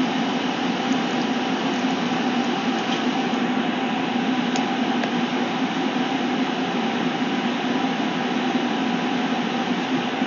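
A steady machine hum with an even hiss, unchanging throughout, like an appliance running in a small room.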